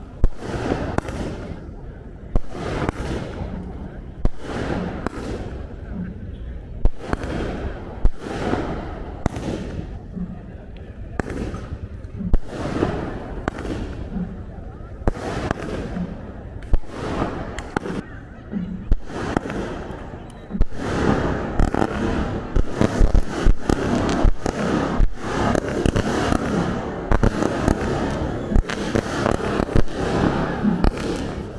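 Aerial fireworks going off: sharp bangs of bursting shells about once a second, turning into a dense, continuous crackling barrage about two-thirds of the way through.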